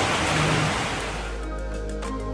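Heavy rain pouring down in a steady hiss, fading after about a second as background music with held tones takes over.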